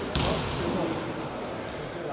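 A basketball bounced once on the gym floor by a free-throw shooter about to shoot, in a reverberant sports hall. Two brief high squeaks, likely sneakers, follow later.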